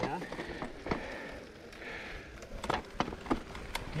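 Mountain bikes rolling over a loose dirt trail: a steady crunch of tyres on dirt and grit, with a few sharp clicks and knocks from the bikes.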